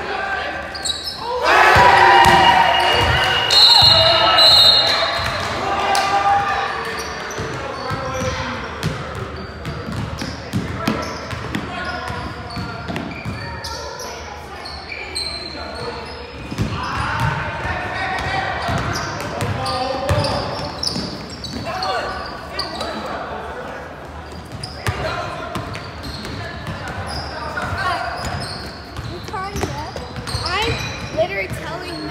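Basketball bouncing on a hardwood gym floor during play, with players' shouts and calls echoing in a large gym, loudest a couple of seconds in and again past the middle.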